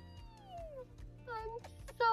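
A woman's playful, wordless high-pitched vocalising: one long note sliding down in pitch, then a few short rising squeaks about one and a half seconds in.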